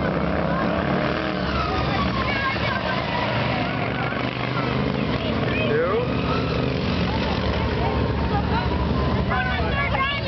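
Several racing riding lawn mowers running together at speed, their small engines' notes rising and falling as they work around the course. Spectators' voices are heard over them.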